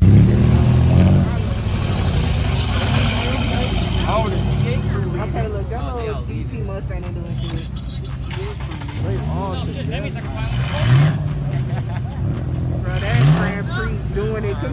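Car engines running as cars pull away across a parking lot, loudest in a rev at the very start, with three short rising revs in the second half. Voices are heard under the engines.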